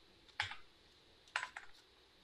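A few faint, separate keystrokes on a computer keyboard: one about half a second in, then a quick two or three near the end.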